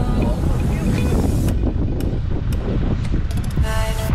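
Wind buffeting the microphone, a heavy low rumble that covers the background music, which fades out soon after the start and comes back near the end. A few brief clicks in the middle.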